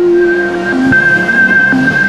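Synthesized logo sting: a held high electronic tone over a whooshing swell.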